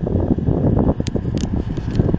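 Steady low rumble inside a car cabin, with a few short scratches of a felt-tip marker writing on a sticky note in the second half.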